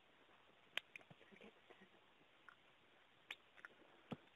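Near silence on an open telephone line: faint line hiss with a few brief, faint clicks, the sharpest just under a second in and again near the end.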